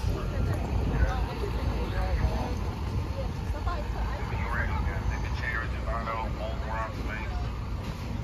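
City street ambience: a steady low rumble of road traffic, with a truck passing, and faint voices of people talking in the background.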